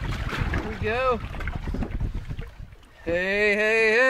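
A person's long, held whoop near the end, after a short exclamation about a second in, as a catfish is landed. Low wind rumble on the microphone underneath.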